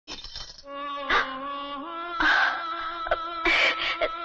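Film background score: a sustained chord that steps up in pitch about two seconds in, with several sharp jingling hits layered over it.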